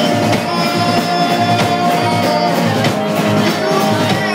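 Rock band playing live, electric guitar over a drum kit beating steadily, heard from within the crowd of a small club.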